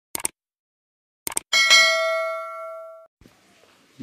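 Subscribe-button animation sound effect: a few quick mouse clicks, then a bright bell-like notification ding that rings for about a second and a half and cuts off abruptly.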